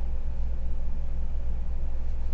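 Steady low background hum with a faint even hiss, unchanging throughout.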